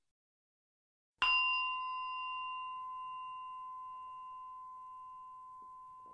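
A single bell-like chime, struck once about a second in and left to ring on one clear tone with fainter higher overtones, fading slowly. It marks the break before the next set of readings.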